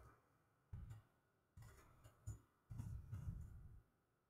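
Near silence: quiet room tone with a few faint, soft low sounds.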